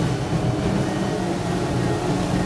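Quad Mercury Racing 450R supercharged V8 outboards on a power catamaran running steadily at speed: a low, even drone under the rush of wind and water.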